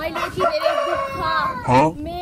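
A rooster crowing once: a long held call that drops in pitch near the end.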